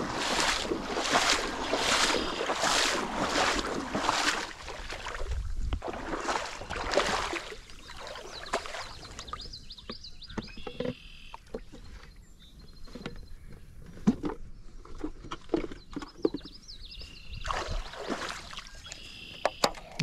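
Someone wading through shallow creek water, with a steady run of splashing steps, about one every half second or so. The steps stop about seven seconds in, leaving quieter water sounds with scattered clicks and faint high chirps.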